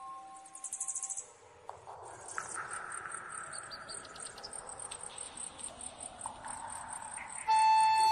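High-pitched insect chirping, about five chirps a second over a soft hiss, after a short dense trill about half a second in. Music fades out in the first second and comes back near the end.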